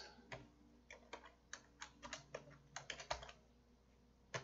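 Faint typing on a computer keyboard: about a dozen separate keystrokes, unevenly spaced.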